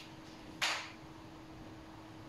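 A person's quiet whispered recitation: one short breathy hiss about half a second in, over a steady low electrical hum.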